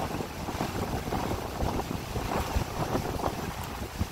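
Storm wind buffeting the phone's microphone in uneven gusts, over a steady hiss of driving rain and choppy water.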